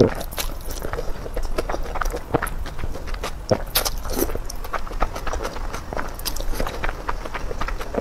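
A person slurping and chewing a mouthful of noodles: a dense, irregular run of wet mouth clicks and short sucking noises.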